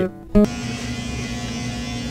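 A short guitar note ends the music, then from about half a second in electric hair clippers run with a steady buzz.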